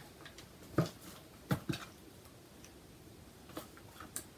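A few light knocks and clicks from a cardboard box and paper sheets being handled and set down. The loudest is about a second in, then two close together around a second and a half, with fainter ones near the end.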